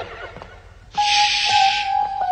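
A short laugh fades out. About halfway through, cartoon background music comes in: one held high note, with a hissing swell over it for most of a second and light ticks keeping time beneath.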